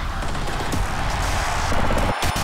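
Whooshing, crackling sound effect of an animated logo sting, swelling to a burst near the end.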